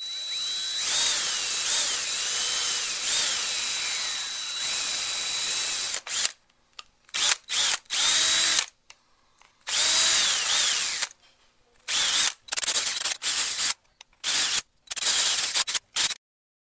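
Cordless drill running on a 3D-printed plastic part: steady for about six seconds, its motor whine dipping and recovering under load, then in a string of short stop-start bursts.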